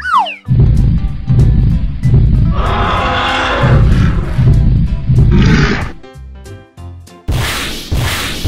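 A long, deep dinosaur roar lasting about five seconds, swelling and fading, over light children's background music. It is preceded by a short falling whistle, and a loud noisy whoosh comes in near the end.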